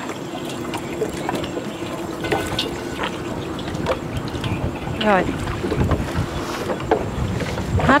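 Wind on the microphone over a steady outdoor noise with a faint steady hum, and small scattered clicks and rustles as a green mesh fish trap is shaken out over an aluminium basin.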